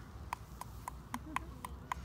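A steady series of short, sharp clicks, about four a second, evenly spaced like hoofbeats or a ticking toy.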